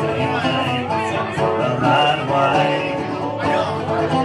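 A teardrop-bodied, long-necked mandolin-family instrument strummed steadily through a live folk song, amplified, with no lyrics sung.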